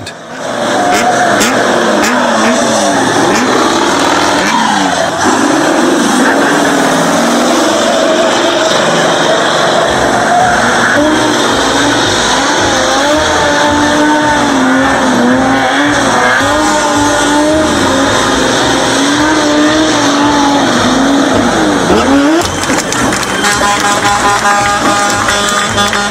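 Vehicles doing burnouts on asphalt: engines revving hard and spinning tyres squealing, with a wavering squeal that carries on almost without a break. It stops near the end.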